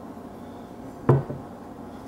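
A glass bottle of gin set down on a tabletop: one sharp knock about a second in, then a lighter tap just after.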